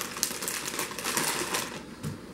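Clear plastic packaging bag crinkling as it is handled, a continuous run of rustles and crackles.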